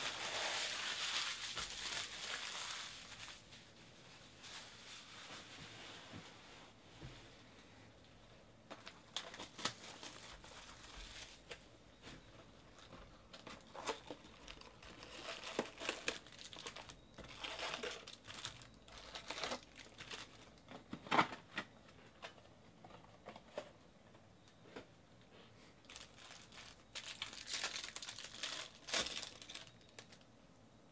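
Plastic wrapping and Bowman Draft jumbo card-pack wrappers crinkling and tearing as a box is unwrapped and packs are ripped open. It begins with a long, loud crinkle of about three seconds, then comes in shorter bouts of crinkling and tearing with brief quieter gaps.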